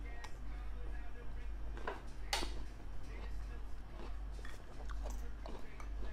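Faint mouth sounds of a man chewing a honey-soaked garlic clove, with one sharp smack about two and a half seconds in, over a steady low hum.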